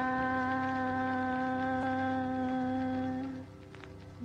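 A woman's unaccompanied voice holding one long, steady note for about three seconds before it dies away.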